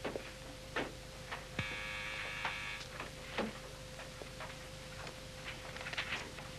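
Quiet room tone under a steady hum, with scattered faint clicks and a short buzzing sound lasting about a second, starting a second and a half in.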